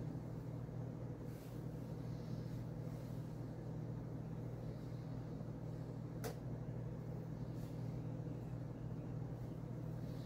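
A steady low hum under faint rustling of a plastic bacon package being handled, with one sharp click about six seconds in.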